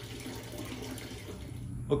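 A stream of water from a shower hose splashing steadily into a plastic bucket of water. The sound cuts off near the end.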